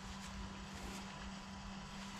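Quiet background with no distinct event: a steady low hum under a faint rumble.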